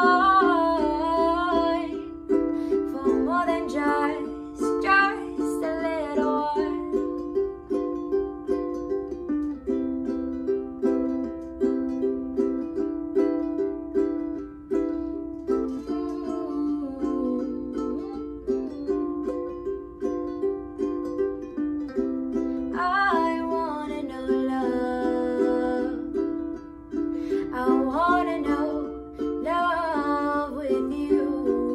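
A woman sings a slow original song to her own ukulele strumming. The strummed chords run on steadily, while the sung lines come near the start and again toward the end, with a long stretch of mostly ukulele in the middle.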